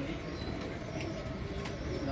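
Domestic pigeons in a loft cooing softly over and over.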